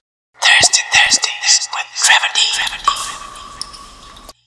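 Loud whispered, breathy speech close to a microphone, in short hissy phrases without voiced tone. A faint steady high tone comes in about three seconds in.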